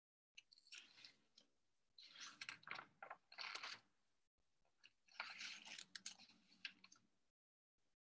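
Faint scratching of writing on paper, in several short bursts of quick strokes separated by pauses.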